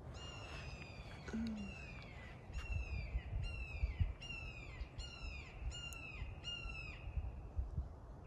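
A hawk calling a rapid series of about ten sharp calls, each sliding down in pitch, stopping about seven seconds in.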